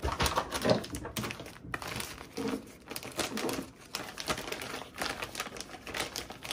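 Plastic food packaging crinkling and rustling as packs of shredded cheese are handled and set into a plastic basket, with irregular light clicks and taps.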